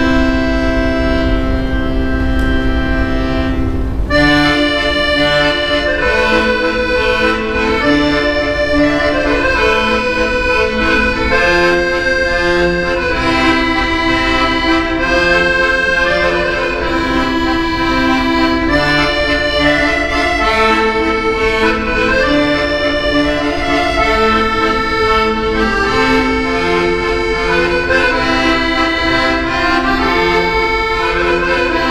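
Solo piano accordion, a red Pistelli, playing: a held chord for about the first four seconds, then a fast-moving melody over bass notes.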